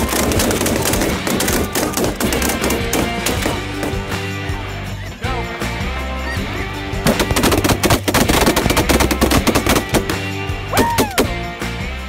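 A volley of rapid, overlapping shotgun fire from many guns at once at a flock of snow geese: one run of shots in the first couple of seconds and a heavier one from about seven to nine and a half seconds in. Snow geese call briefly near the end, over background music.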